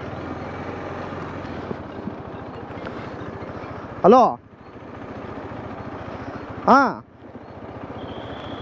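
Steady riding noise of a motorcycle under way, engine and rushing wind, with a rider calling 'hello?' twice, about halfway through and again near the end.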